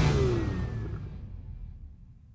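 Tail of a logo sting's car sound effect: a sports-car engine rev and pass-by whoosh, its pitch falling as it fades out.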